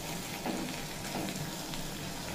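Okra in poppy-seed paste sizzling softly in a steel kadai, with a couple of light scrapes of a metal spatula against the pan.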